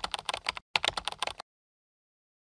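Computer keyboard typing sound effect: a quick run of key clicks with a brief break a little over half a second in, stopping abruptly about a second and a half in.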